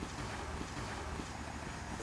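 Steady low rumble of wind on the microphone outdoors, with no distinct events.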